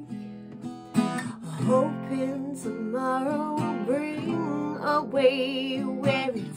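Acoustic guitar strummed as accompaniment, with a strong strum about a second in, and a woman singing over it with vibrato on held notes.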